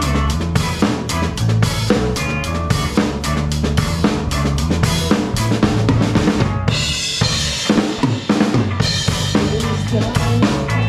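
Rock band playing live, led by a drum kit with bass drum, snare and cymbals, over electric guitars. About three-quarters of the way in, the low notes drop out briefly under a cymbal wash before the full band comes back.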